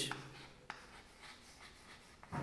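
Chalk writing on a chalkboard: faint scratching of the strokes, with a few light taps as the chalk meets the board.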